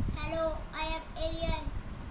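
A child singing three held "ooh" notes in a row.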